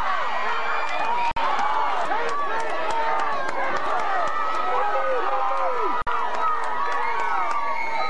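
Spectators in the stands of a football game, many voices shouting and talking over one another in a steady crowd din. The sound cuts out for an instant twice, about a second in and about six seconds in.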